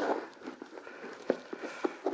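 Faint rustling of football-boot laces being pulled and loosened by hand, with a few light clicks, one about a second and a quarter in and another near the end.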